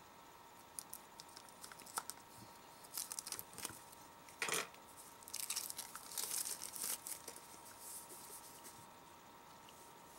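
Clear plastic shrink wrap being slit with a knife and peeled off a small plastic blind-box can, giving faint crinkling and tearing with scattered small crackles, busiest in the middle and dying away near the end.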